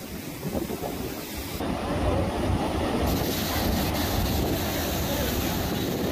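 Rough surf breaking and churning against a pier's concrete pillars, a steady heavy rumble of waves with wind buffeting the microphone; it grows louder about a second and a half in.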